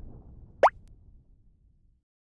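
Animated subscribe-button sound effect: a single short, rising 'bloop' about two-thirds of a second in, over the dying tail of a low rumble, then silence.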